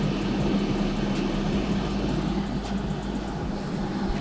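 Rosenstein & Söhne 4.5-litre hot-air fryer running on its fries program at 200 °C: its fan gives a steady whir with a low, constant hum. A sound-level meter reads just over 50 dB(A) from it.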